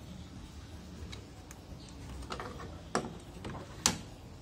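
A few light clicks and knocks as a TV power-supply circuit board is handled and set down on the metal chassis, the sharpest click just before the end.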